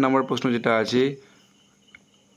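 A man's voice speaking for about a second, then near silence.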